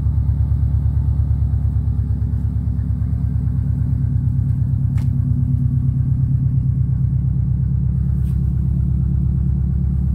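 Subaru Impreza WRX STI's turbocharged flat-four engine idling steadily with a low, even exhaust burble, a little louder for a few seconds near the middle. A single faint click about halfway through.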